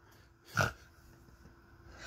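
A woman's single short burst of laughter, a quick breath out about half a second in.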